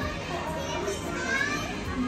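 Background hubbub of children playing and calling out, with faint distant voices and no close speech.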